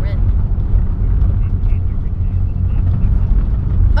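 Steady low rumble of road and engine noise inside the cabin of a 2008 Mitsubishi Lancer Evolution X under way.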